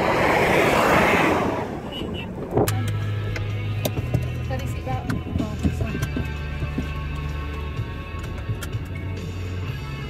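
A gust of wind on the microphone, then a thud about two and a half seconds in. After that, a 4x4's engine runs steadily, heard from inside the cabin, with scattered clicks and rattles.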